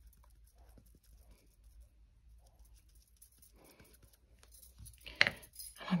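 Faint handling sounds: light rustles and small taps as hands work a clear acrylic stamp block and a piece of card on a cutting mat.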